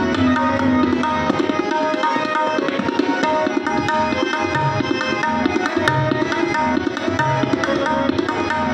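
Harmonium and tabla playing Sikh shabad kirtan: the harmonium holds steady reed chords and melody while the tabla keeps a running rhythm, with deep strokes of the bass drum sounding now and then.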